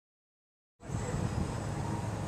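Silence, then a little under a second in, steady outdoor background noise begins abruptly: a low rumble with a faint hiss and no distinct events.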